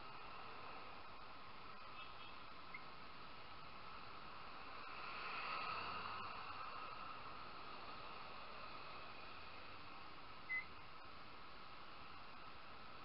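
Faint, steady riding noise from a motorcycle moving through traffic, swelling a little about halfway through. Two short high chirps cut in, one early and a louder one near the end.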